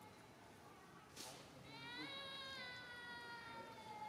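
A faint, long, high animal call with a slowly falling pitch begins about a second and a half in, after a brief noise.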